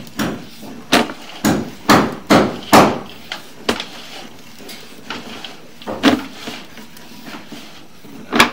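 Sewer inspection camera on its push cable being fed quickly down a drain pipe, giving a run of sharp knocks and clacks: about six close together in the first three seconds, then two more spaced out.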